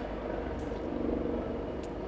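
Steady low background hum and hiss of room tone, with no distinct sound events.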